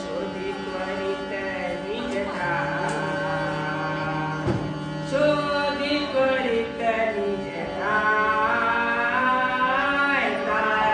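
A man singing a Marathi devotional bhajan in long, ornamented phrases, accompanied by a harmonium holding steady notes underneath.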